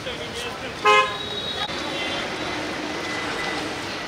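A vehicle horn toots once, briefly, about a second in, over street noise and background voices.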